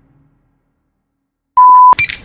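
Silence, then one short, loud electronic beep: a steady pure tone lasting about a third of a second, near the end.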